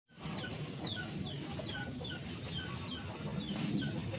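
A bird calling: short, high, falling chirps repeated two to three times a second over a low steady rumble.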